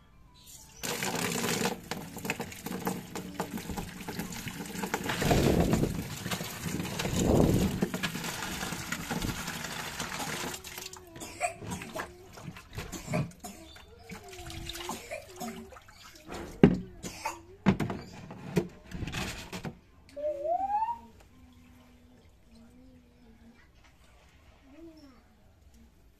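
Water running and splashing into a clear plastic tub for about ten seconds, then cutting off; after that, water sloshing about in the tub with a few sharp knocks on the plastic as it is rinsed out by hand.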